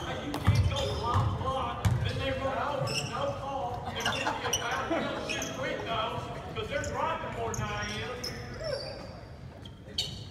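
Basketball bouncing on a hardwood gym floor, a few thumps in the first two seconds, under indistinct chatter of players and onlookers in the gym.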